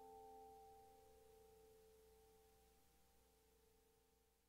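Near silence: the last held piano chord at the end of a ballad, a few sustained notes slowly fading out.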